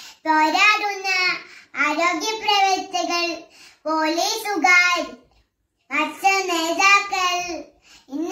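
A small girl's voice reciting in Malayalam in short, high-pitched phrases, with a pause a little past halfway.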